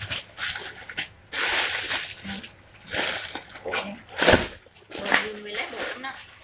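Clear plastic garment bags rustling and crinkling as they are handled, with a sharp thud about four seconds in.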